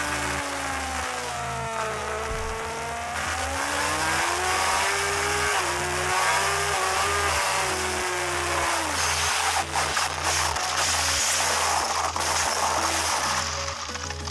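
Racing motorcycle engine heard from the onboard camera, dropping in pitch as it slows, then rising as it drives out again. About nine seconds in the engine note cuts out and gives way to rough scraping and clattering noise: the bike has lost the front and crashed, sliding into the gravel. A steady music beat plays underneath.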